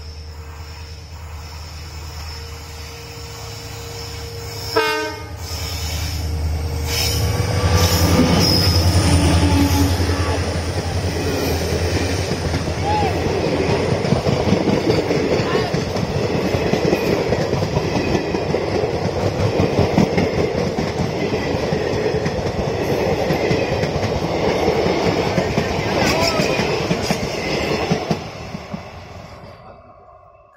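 Diesel locomotive hauling a passenger train approaching with a steady low engine drone, with a brief loud burst about five seconds in. The locomotive then passes close and the coaches' wheels clatter rhythmically over the rail joints, dying away in the last couple of seconds as the train recedes.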